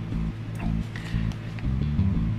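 Background music with guitar.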